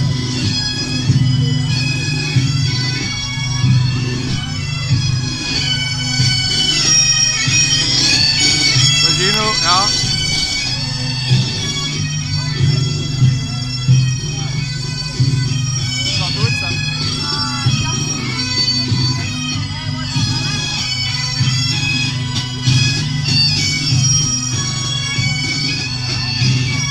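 Bagpipes playing a melody over a steady low drone, with voices around them.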